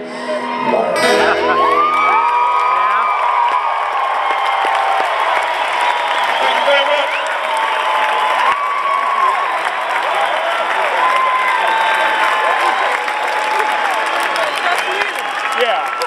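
A band's closing chord ends about a second in, then a large concert crowd cheers and whoops loudly and steadily.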